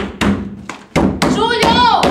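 A palm pounding on a wooden apartment door: several heavy thumps. A woman lets out a high, wailing cry that falls in pitch in the second half.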